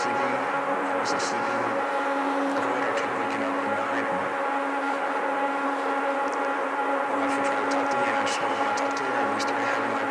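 Death-industrial drone music: a dense cluster of sustained, unchanging tones over a hiss, with scattered faint high crackles and clicks, heard from a digitized cassette master.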